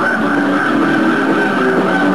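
Punk rock band playing loud live, with distorted electric guitar holding sustained notes.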